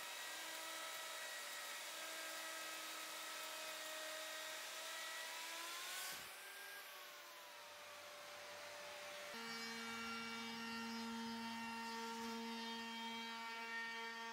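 Plunge router with a rebate cutter running: a faint, steady whine. About six seconds in, its pitch rises briefly and then falls away. From about nine seconds a lower steady whine takes over.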